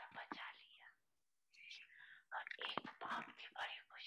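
Faint, breathy speech: a voice talking quietly and low in the mix, with a short pause about a second in.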